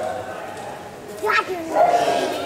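Voices in a large indoor hall: a quieter stretch, then a short sharp vocal call a little past the middle, with speech-like calling starting again near the end.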